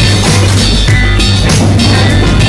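Upbeat children's classroom song playing from the coursebook's audio track, with a steady drum beat and bass.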